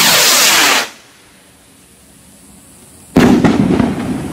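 Funke Alfa 1 firework rocket: the rushing hiss of its motor as it climbs, which stops about a second in. About three seconds in comes the sharp bang of its burst, trailing off in crackles.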